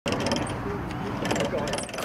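Hand-cranked ratchet winch at the foot of a wooden trebuchet clicking rapidly as it is cranked, winding the trebuchet up for a launch.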